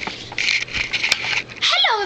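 A girl's voice: breathy, hissing vocal sounds, then a short high-pitched squeal that rises and falls near the end.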